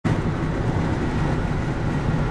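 Steady low rumble of a car cruising at highway speed, heard from inside the cabin: tyre and engine noise.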